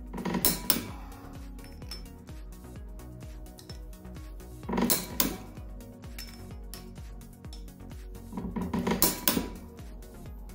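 Click-type torque wrench on steel flywheel bolts: three short bursts of sharp metallic clicking, about half a second in, at the middle and near the end, as each bolt is pulled up to its 91 ft-lb setting and the wrench clicks. Background music plays under it.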